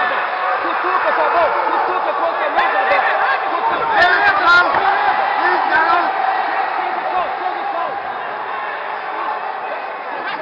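Many voices shouting over one another: ringside spectators yelling at fighters grappling on the mat. A few sharp clicks come about four seconds in.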